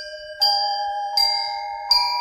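Bell-like chime notes struck one after another, about every three-quarters of a second, each ringing on under the next and stepping up in pitch. This is the instrumental opening of the next devotional song in the compilation.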